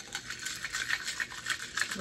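Ice cubes clinking against a drinking glass as a straw stirs an iced latte: rapid, continuous small clinks.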